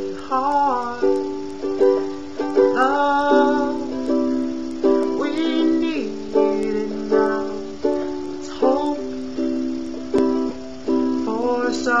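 Ukulele strummed in a steady rhythm, a little under two chords a second, playing an instrumental stretch between sung lines.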